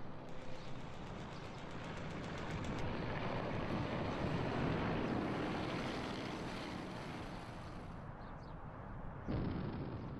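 A rushing noise, like wind or a distant rumble, swells to a peak and slowly fades. A few faint ticks come early on, and a sudden louder burst of noise starts near the end.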